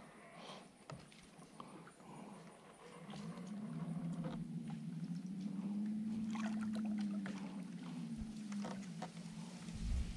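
A faint motorboat engine running as it passes on the lake, swelling from about three seconds in and fading out near the end, its pitch rising a little and then falling. Small clicks of fishing tackle being handled sound throughout.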